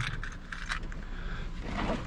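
The LT1 V8 of a 1994–96 Impala SS idling low and steady in the background, with a few light clicks over it. The owner says the engine is shaking and trembling too much after an EGR valve replacement that did not clear the fault.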